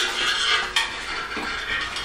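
Handling noise of a sheet-metal motorcycle belly pan being moved about on the bench: a sharp click, then light scraping and rattling of metal.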